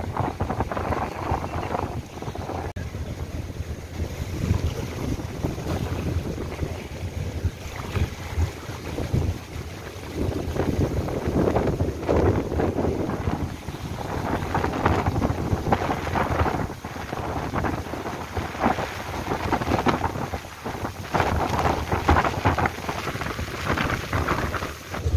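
Rough, cyclone-driven sea surf churning and washing over the shore, swelling and falling in surges, with gusty wind buffeting the microphone.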